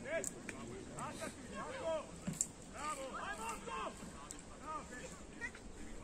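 Shouting voices of players and coaches across an open football pitch, the words too far off to make out, with a couple of sharp knocks, the loudest about two and a half seconds in.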